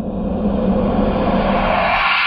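A whoosh sound effect for an animated subscribe end card: a rushing noise that swells louder and brighter, then holds loud over a steady low hum.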